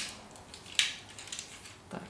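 Plastic toy robot parts being pushed together by hand, with one sharp click about a second in as a piece snaps into place, then a few faint ticks of parts shifting.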